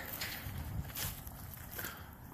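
Faint footsteps on asphalt: a few soft steps about a second apart over a quiet outdoor background.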